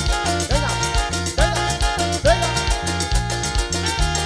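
Live band playing up-tempo Latin dance music: a repeating bass line and percussion keep a steady beat under a melody with notes that slide up and down.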